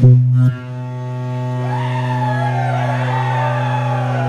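Live band starting a song with a single low note held steady as a drone, loudest at its very start. A higher, wavering melody line comes in over it about one and a half seconds in.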